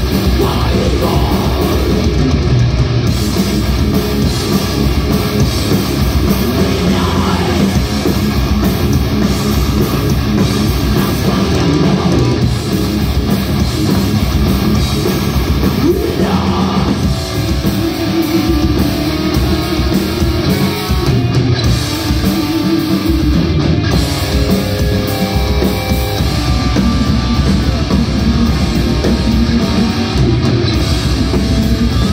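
A thrash/death metal band playing live at full volume: distorted electric guitars, bass guitar and a fast drum kit, with sung vocals over it at times. It is heard through the club's PA from among the audience.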